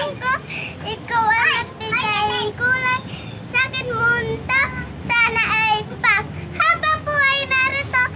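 A young girl singing in short, high-pitched phrases.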